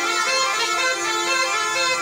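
Snake charmer's been (pungi), a gourd wind instrument with reed pipes, playing a melody over a steady held drone.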